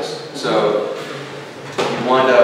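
A man speaking, with a single sharp knock near the end.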